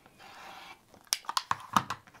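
Rotary cutter blade rolling through layered quilting cotton on a cutting mat as a fabric corner is trimmed off along a ruler: a short crunching cut. It is followed by several sharp clicks and taps as the cutter is set down and the cut pieces handled.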